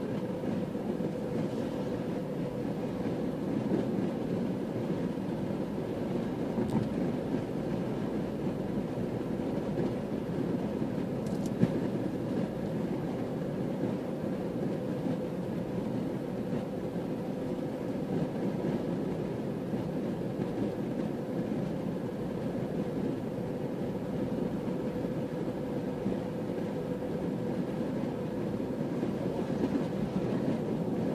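Steady road noise of a car cruising at constant speed, heard from inside the cabin: tyre and engine drone with a faint steady hum. There is one brief click near the middle.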